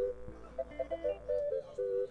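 Short instrumental jingle: a quick melody of short notes in two-note harmony, the same phrase starting again about half a second in and stopping abruptly at the end.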